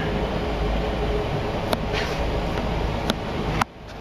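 Steady low hum of a ship's machinery and ventilation on the bridge, with a few sharp clicks. The hum drops away suddenly near the end.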